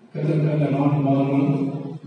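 A man's voice through a handheld microphone, preaching in one long, drawn-out, sing-song phrase like a chant. It starts a moment in and holds a fairly level pitch to the end.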